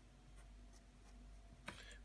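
Faint scratching of a pen writing on squared paper, a few short strokes, with a soft click near the end.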